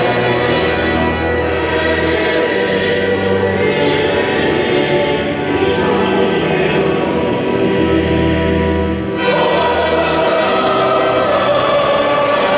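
Liturgical choir singing held notes over low sustained accompaniment, echoing in a large stone cathedral; the chord changes abruptly about nine seconds in.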